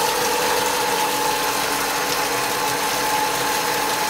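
Water pouring from a pipe and splashing into a concrete pond as it fills, over the steady hum of an electric water pump.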